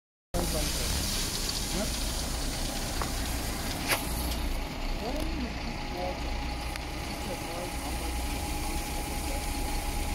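Wheel loader's diesel engine running steadily as its raised bucket tips aggregate into a concrete batching plant's hopper, with one sharp knock about four seconds in.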